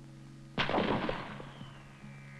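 A single rifle shot about half a second in: a sudden loud crack followed by a ring that dies away over about a second. It marks the shot breaking at the end of a smooth trigger squeeze. A faint steady hum runs underneath.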